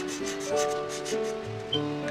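Felt-tip marker rubbing back and forth on paper in quick strokes as it colours in a shape, over gentle background music with sustained notes.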